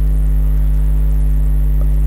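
Loud, steady electrical mains hum: a low drone with a buzzy edge that does not change.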